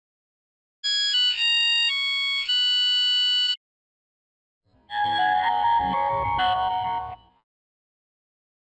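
Two short electronic Nokia phone startup jingles. The first is a bright run of steady synth notes ending about three and a half seconds in. After a short silence, a second, fuller jingle with a low rumble underneath plays from about five seconds in to just past seven.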